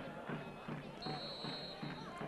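Faint murmur of voices from a small stadium crowd, and about a second in a referee's whistle blown once, briefly, for the kick-off.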